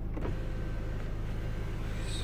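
Electric sunroof motor of a 2010 Hyundai Santa Fe running steadily as the glass panel slides closed, a faint even whine over a low hum, heard from inside the cabin.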